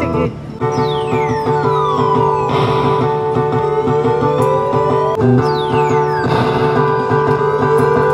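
Electronic claw machine game music with steady synth tones, and a swooping sound effect that falls in pitch, heard twice.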